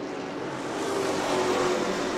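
Engines of a field of Sportsman stock cars running at speed around a short asphalt oval: a steady drone of several engine notes at once that grows gradually louder.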